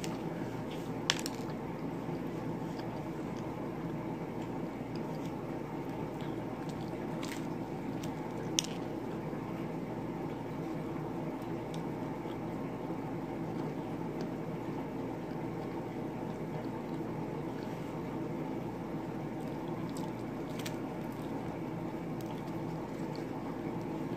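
Close-up chewing of a crusty sausage pizza slice, wet, squishy mouth sounds with a few sharp clicks, over a steady background hum.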